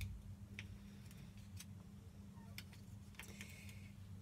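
Faint small clicks, roughly two a second, from a small plastic jar of loose powder being handled while its sifter seal is picked at. A low steady hum runs underneath.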